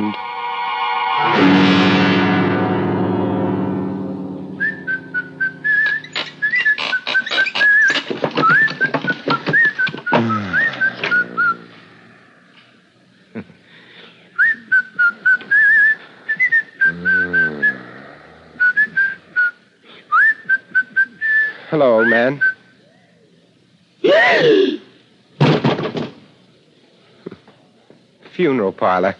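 A short music sting of held, sustained notes, then a man whistling a wavering tune in two long phrases, with scattered knocks and clicks and a few short voiced sounds between and after the phrases.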